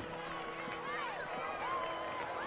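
Indistinct voices of several people calling out, with no clear words, over a low steady held tone.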